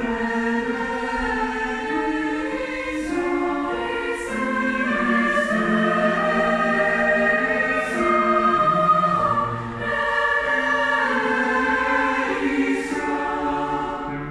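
Mixed youth choir singing in harmony, holding sustained chords that change every second or two, building to its loudest about eight to nine seconds in before easing briefly.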